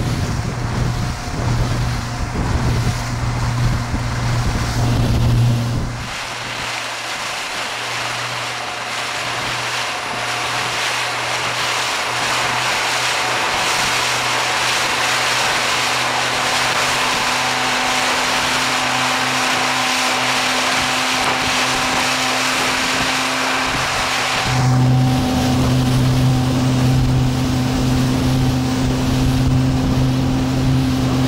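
Towing motorboat's engine running at steady speed under wind and rushing water. Its low hum thins out abruptly about six seconds in, leaving more hiss, and comes back strong a few seconds before the end.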